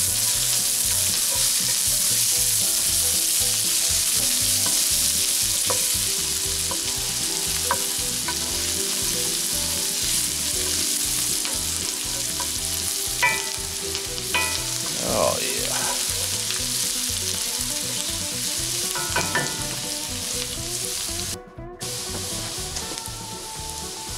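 Diced sweet yellow onion sizzling in butter in a cast iron skillet, stirred with a spatula that scrapes the pan a few times; the onions are softening and browning to caramelized. The sizzle cuts out for a moment near the end.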